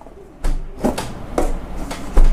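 Cardboard product box being handled in the hands: a soft thump about half a second in, then a few light taps and scuffs of the cardboard.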